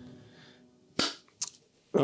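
The last mallet-instrument notes of music fade out, then a single sharp snap about a second in, followed by two fainter clicks.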